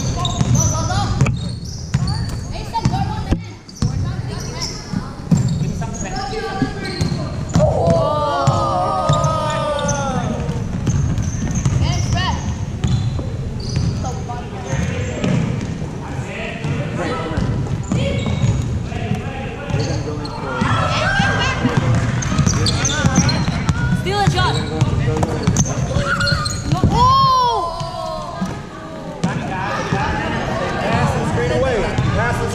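Basketball dribbled on a hardwood gym floor, sharp bounces echoing in a large hall, with indistinct voices calling during play.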